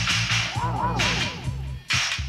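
Electronic runway music: a pulsing bass line under sharp-edged bursts of hiss that start and stop abruptly, with a cluster of quickly sliding up-and-down synth tones about half a second in.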